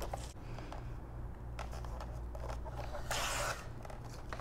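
Sheets of patterned paper handled and slid across a paper trimmer: soft paper rustles and scratches, with one louder scrape lasting about half a second about three seconds in.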